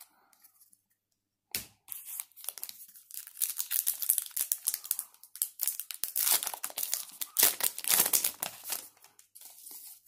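A trading card pack's wrapper being torn open and crinkled by hand, in a run of crackling rips that starts about a second and a half in and is loudest in the second half.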